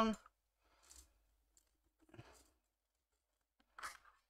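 Faint, brief handling sounds of small tools and tiny screws being picked up at a modelling bench: three soft clicks and rustles, the last and loudest near the end.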